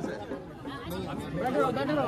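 Crowd chatter: several voices talking at once at a low level, growing a little louder toward the end.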